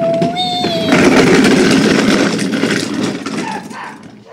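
A held high voice note for about the first second, then the hard plastic wheels of a child's ride-on toy train rattling and rumbling as it is pushed over stone paving, fading away near the end.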